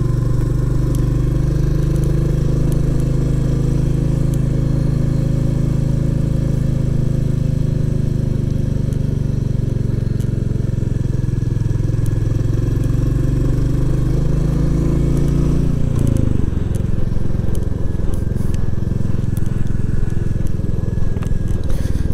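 Royal Enfield Classic 350's single-cylinder engine running steadily under way, heard from the rider's seat. About two-thirds of the way through, its note drops and then carries on at the lower pitch.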